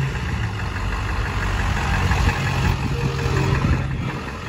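A vehicle engine idling steadily, a constant low hum.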